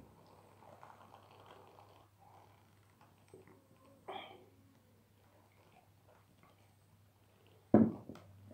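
Faint gulping and swallowing as a man drinks beer from a glass, with a short thump near the end.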